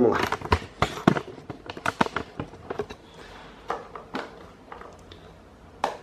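Hard plastic parts of a pedestal fan clicking and knocking as they are handled and worked apart. A quick run of sharp clicks over the first few seconds, then a few scattered ones.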